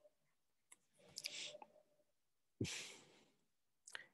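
Faint breathing into the microphone: two short breaths, about a second in and again at about two and a half seconds, with a few faint clicks.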